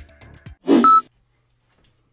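The tail of the outro music, then a loud, short electronic sound effect ending in a steady high beep, about a second in.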